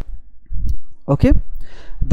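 A single sharp computer mouse click about half a second in, followed by a man saying 'okay'.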